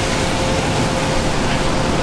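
Steady rushing noise of a rainy city street, traffic and falling rain together, with a faint steady hum underneath.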